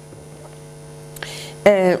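Steady electrical mains hum. Near the end, a woman takes a sharp breath and makes a short voiced sound just before a fit of coughing.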